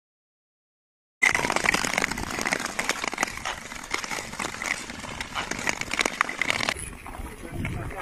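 Skate blades and pole tips scraping and clicking on thin lake ice, starting suddenly about a second in with many sharp ticks; the sound thins out and drops a little before the end.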